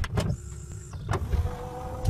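Logo-animation sound effects: whooshing, mechanical sliding with several sharp clicks, and a steady tone that comes in about halfway.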